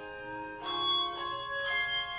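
Handbell choir ringing a piece: struck chords of handbells that ring on and overlap, with new chords coming in about half a second in, just past a second, and near the end.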